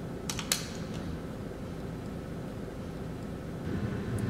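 Metal elevator call button pressed: two quick clicks about half a second in, over a steady low hum.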